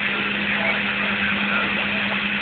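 CB radio speaker giving out a steady, loud hiss of static with an even low hum underneath and nobody talking on the channel.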